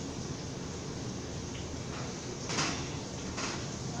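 Oven door opened and a metal baking pan drawn out of the oven, with a brief scrape about two and a half seconds in, over a steady background hum.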